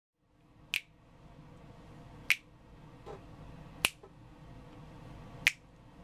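Finger snaps keeping a slow, steady beat: four sharp snaps about a second and a half apart, counting in before the singing, over faint room noise.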